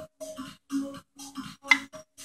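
A wood screw being turned into a wooden board with a hand screwdriver: a quick run of short squeaks and creaks, one with each twist, about seven in two seconds, with a sharp click near the end.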